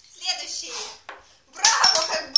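A voice making short sounds without clear words, then a louder, rougher stretch of voice near the end.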